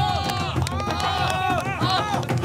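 Several men cheering and shouting together, "hao hao hao" ("good, good, good"), their voices overlapping.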